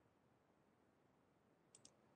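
Near silence: a faint steady hiss, with a couple of faint clicks near the end.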